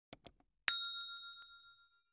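Two quick mouse-click sound effects, then a single bright bell ding that rings on and fades over about a second: the sound effect of clicking a YouTube notification bell in a subscribe animation.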